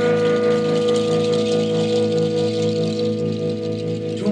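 Electric guitar holding one long sustained note that rings on steadily, over a low pulsing bass tone, with no drum strokes.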